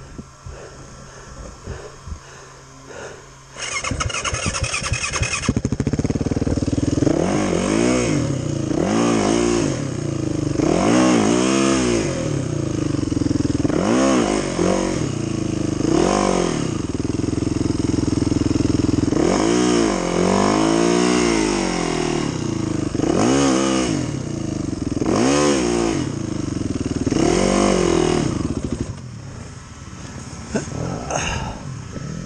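Dirt bike engine at a quiet idle, then coming in loudly about four seconds in and revved up and down over and over, a rise and fall in pitch every second or two, until it drops back near the end.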